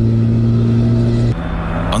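Engine of the PAL-V One prototype flying car driving on a track at a steady speed: a steady hum that switches abruptly to a different, slightly quieter pitch about a second and a half in.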